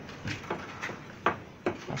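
Handling noise: about five light, scattered knocks and rustles as hands grip a boa constrictor through a cloth.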